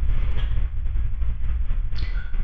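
A steady low rumble with a faint hiss behind it.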